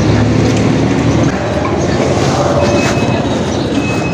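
Street traffic noise: a steady low rumble with no clear separate events.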